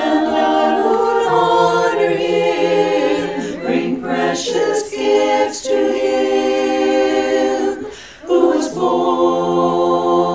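Women's chorus singing a cappella, holding sustained chords, with a short break for breath about eight seconds in.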